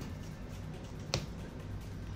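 A single sharp snap about a second in, over faint background music.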